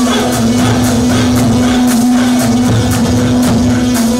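Loud Arabic wedding procession music: large double-headed tabl drums struck with sticks in a fast, steady beat, over a sustained held note from the band.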